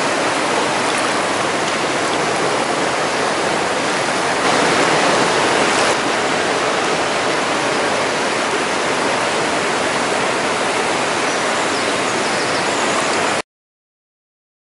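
Mountain stream water rushing over rocks and gravel, a loud steady rush that swells slightly about five seconds in and cuts off suddenly near the end.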